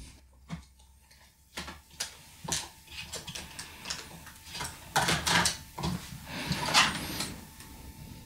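A 2.5-inch SSD being slid out of the drive bay of a white polycarbonate MacBook: scattered clicks and scraping of metal and plastic as it is worked loose and drawn out, loudest about five seconds in.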